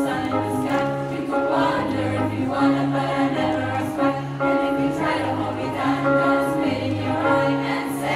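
A large girls' choir singing an upbeat show tune together over instrumental accompaniment with a steady, bouncing bass line.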